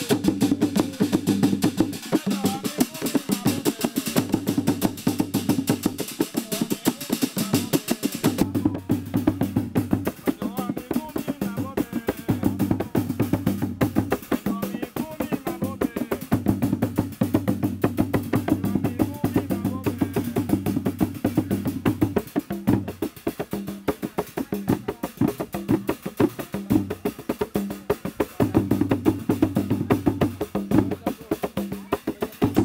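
Traditional Zanzibari ngoma drumming for the Kiluwa dance: several hand drums beaten in a fast, unbroken rhythm of sharp clicking strokes over deeper booming notes.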